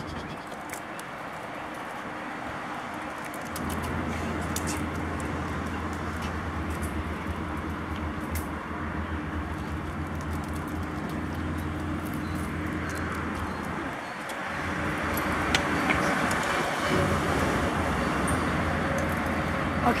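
Steady road traffic noise with a low engine hum. It grows louder at about three and a half seconds in and again at about fifteen seconds.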